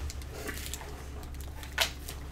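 A chocolate bar's plastic wrapper rustling softly as it is handled, with one louder crinkle near the end, over a low steady hum.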